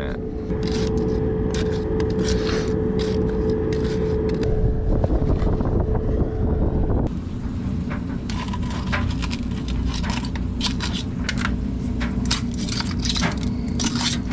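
Stiff cement mix being packed by hand around a sewer pipe: gritty scraping and crunching with scattered clicks over a steady hum. About seven seconds in the hum changes to a lower one while the scraping and clinking go on.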